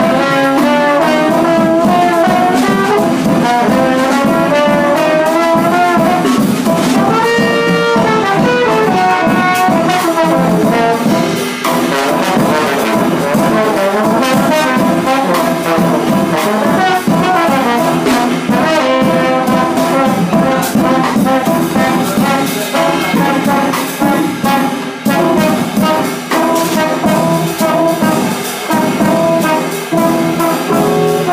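Live jazz: a trombone plays a moving melodic line over electric keyboard and drums with cymbals.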